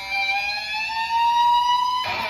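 Jackson X Series Soloist electric guitar holding one sustained note that glides slowly upward in pitch, swelling louder about a second in.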